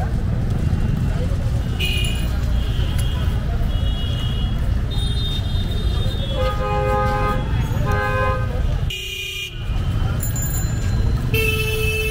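Street traffic with a steady low rumble and vehicle horns honking several times, including two longer honks about a second apart in the middle and another near the end.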